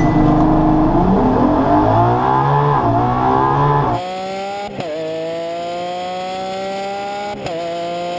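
V12 supercar engine at full throttle, accelerating hard from a launch-control standing start. For the first half several engine notes overlap. After that a single clean note climbs steadily, broken twice by brief upshift dips.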